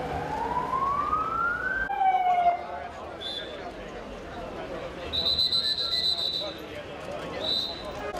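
Emergency vehicle siren wailing up in pitch for about two seconds, cut off suddenly, then a short, louder falling siren tone. Later come a longer and a short shrill whistle blast over crowd chatter.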